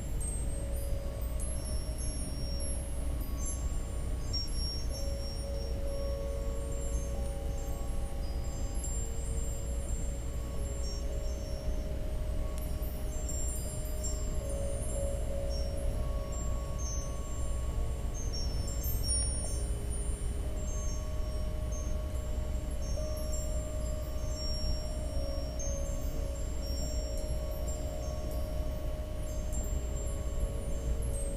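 Ambient meditation music: long held mid-range tones with scattered high, tinkling wind-chime notes over a steady low rumble.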